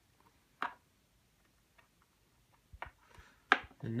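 A few light clicks and taps of small reloading components being handled and pressed together on a bench as shot cards go into a .357 Magnum case: a sharp tick about half a second in, a couple of faint ones later, and a louder click near the end.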